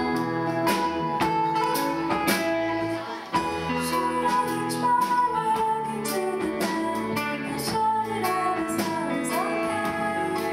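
A woman singing live while strumming an acoustic guitar, with a brief dip in the music about three seconds in.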